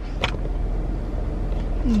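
Steady low rumble of a car's cabin, with a sharp click about a quarter second in as the camera is handled and a fainter click near the end.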